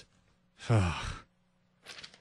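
A man sighs once, about half a second in: a breathy exhale whose pitch falls, lasting under a second.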